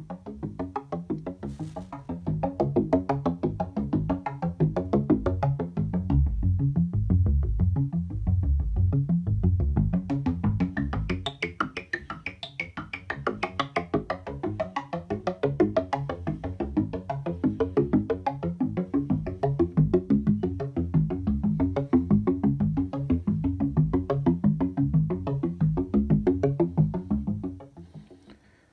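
Keen Association 268e Graphic Waveform Generator oscillator in a Buchla modular synthesizer playing a fast sequence of short, plucked notes, several a second, its pitch stepped by a sequencer and each note pinged by an envelope. The tone colour shifts as the drawn wave shape changes, and the sequence stops just before the end.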